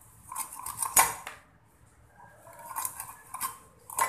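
A hilsa fish being cut on a boti, the upright curved blade: a few short, sharp scraping strokes of fish drawn against the metal, the loudest about a second in.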